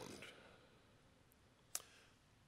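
Near silence in a pause between spoken phrases, with the reverberant tail of the last word dying away, broken by one short, sharp click near the end.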